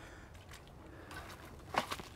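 Quiet outdoor background with a brief rustle near the end, as of someone crouching in grass and brush at the water's edge.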